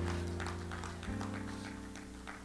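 Church keyboard playing sustained chords, moving to a new chord about a second in, the notes slowly fading.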